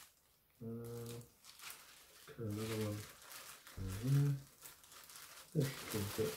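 Clear plastic grow bag crinkling as it is handled and folded, with scattered soft crackles, broken by three short wordless hums from a man's voice.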